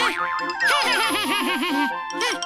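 Cartoon boing sound effects over cheerful children's music: a long falling glide, then a rapid run of about six springy, bouncing boings.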